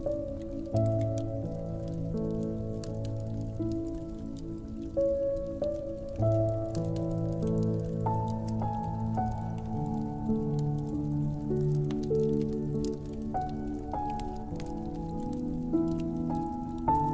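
Piano playing a slow melody over held chords, a new note or chord every second or so. The small, scattered crackles of a wood fire run underneath.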